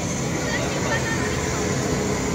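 People's voices in the background over a steady rushing noise.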